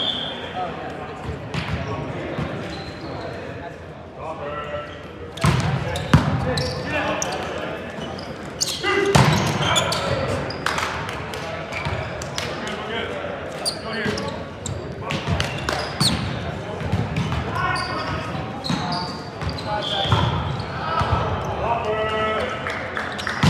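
Volleyball rally in a large echoing gym: sharp slaps of the ball being struck, the loudest about six seconds in, amid players shouting and calling to one another.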